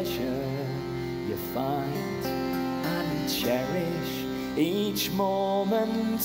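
A man singing a slow, mournful folk ballad with a wavering voice, over accompaniment holding steady chords.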